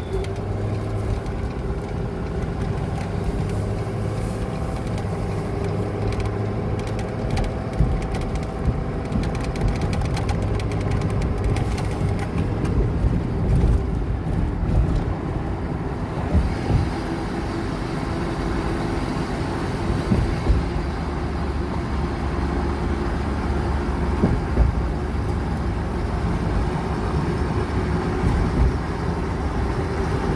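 Car cabin noise while driving at highway speed: a steady rumble of engine and tyres, with a few brief bumps from the road.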